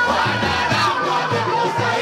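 Male group performing a Swahili qaswida, many voices singing and shouting together in chorus over drum beats, with the crowd's voices mixed in.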